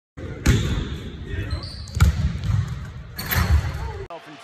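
Basketball bouncing on a hardwood gym floor, with sharp bounces about half a second and two seconds in and more near the end.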